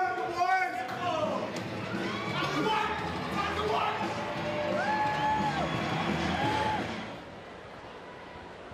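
An indistinct, echoing voice with a few drawn-out notes, over a background of crowd noise. The sound drops away sharply about seven seconds in.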